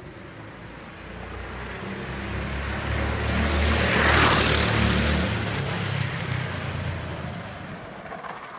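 Go-kart with two Honda GX160 single-cylinder four-stroke engines driving past. The engine sound builds to a peak about halfway through, then fades as it moves away.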